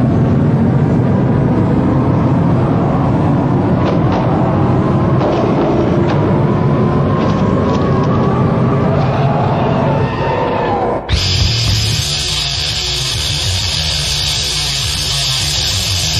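Death metal demo recording: a dense, rumbling intro with slowly gliding tones, then about eleven seconds in the band cuts in abruptly with distorted electric guitars.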